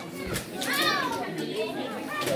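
Children playing and calling out, with one high child's voice rising and falling about half a second in, over general chatter in a large hall.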